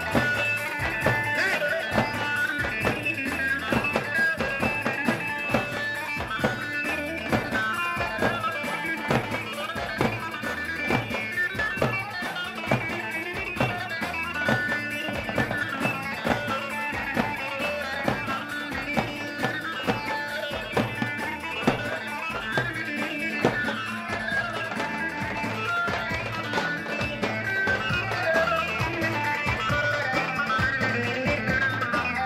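Turkish folk dance music for a yanbağlama halay: davul bass drums beating a steady, driving rhythm under a lead melody line.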